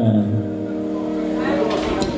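A man's voice into a microphone, holding one long steady vocal note for about a second and a half before breaking into shorter, sliding syllables near the end.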